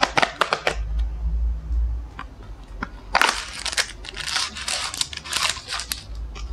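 French bulldog crunching a hard treat, a quick run of sharp crunches at the start. From about three seconds in, a foil treat packet crinkles and rustles loudly as it is handled.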